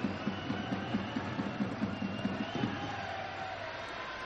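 Football stadium crowd noise with supporters beating drums in a steady rhythm, about four beats a second, which stops about two and a half seconds in.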